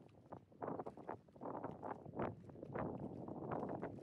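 Waterfront ambience: wind buffeting the microphone in uneven gusts, with the sound of water moving, rising and falling in irregular surges.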